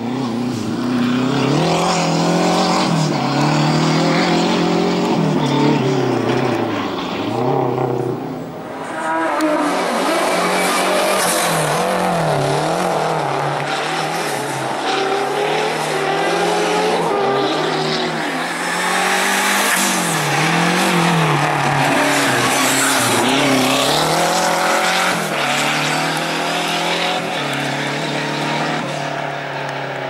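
Renault 5 rally hatchback's engine revving up and falling back over and over as it is driven flat out between slalom cones, the pitch rising and dropping every second or two. It goes briefly quieter about eight seconds in, then comes back harsher and louder.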